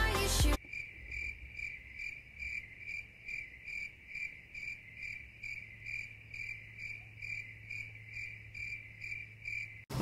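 A cricket chirping steadily, an even high chirp about two and a half times a second, starting about half a second in as music stops; the clean, regular repeats sound like the stock crickets effect for an awkward silence.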